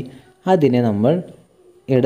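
A man's voice saying one drawn-out word, with short pauses before and after.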